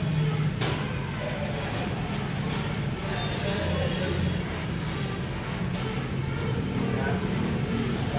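A steady low hum runs throughout, with faint voices behind it and a single click about half a second in.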